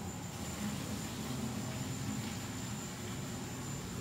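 Steady low hum and hiss of background machinery, with a thin high whine over it.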